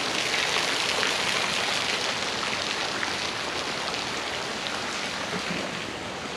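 Small, thin waterfall spilling over a rock ledge and splashing onto wet ground and a shallow pool below: a steady splashing hiss, loudest near the start and easing slightly toward the end.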